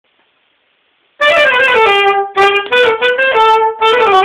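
Saxophone playing a polka tune, starting about a second in: a quick run of separate notes in short phrases, with two brief breaks between them.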